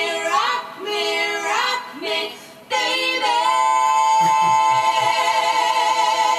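Female backing vocalists singing in harmony over a blues band track: short phrases that each slide up in pitch, about one a second, then after a short break a long held note.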